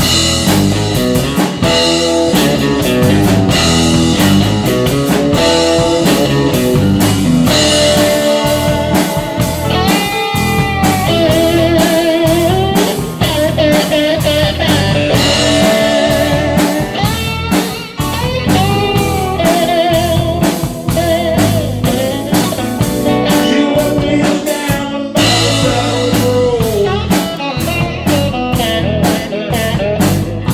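Live electric blues band playing: electric guitar, bass guitar, drum kit and keyboards, starting together just as it opens and carrying a steady beat.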